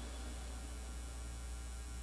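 Steady low electrical mains hum with a faint hiss, coming through the microphone.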